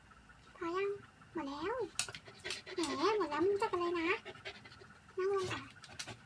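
Husky's whining, yowling "talk" while it begs for treats: a string of drawn-out calls that slide up and down in pitch, in short bouts with pauses between.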